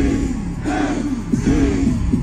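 Live metal music played loud through a concert sound system, heard from within the crowd, with a heavy, steady low end and a lead line gliding up and down in pitch.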